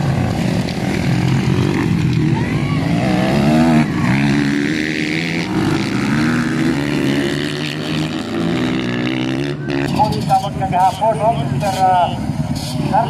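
Motocross dirt bike engines revving up and down as the bikes race over the track. About ten seconds in, the engines give way to a voice.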